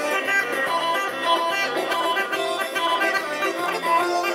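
Rhodope kaba gaida, the large low-pitched goatskin bagpipe, playing a dance tune with quick, changing notes.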